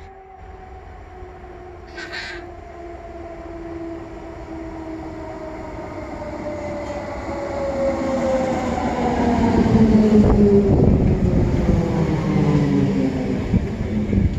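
ÖBB class 4020 electric multiple unit pulling into a station: its whine falls steadily in pitch as the train slows. The sound grows louder as the train approaches, and wheel and rail rumble is loudest as the cars draw alongside, from about ten seconds in.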